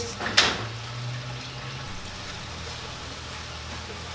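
Room tone: a steady low hum with a faint hiss, its lower part dropping away a little before two seconds in. A short breathy noise comes about half a second in.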